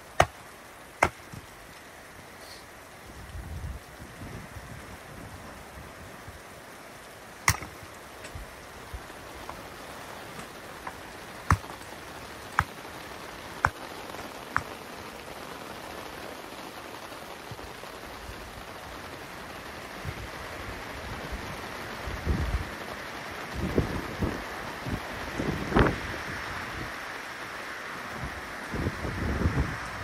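Sharp knocks of a hatchet splitting firewood: a couple at the start, another near the quarter mark, then four about a second apart in the middle. These sound over steady rain and sleet, and gusts of wind buffet the microphone in the last third.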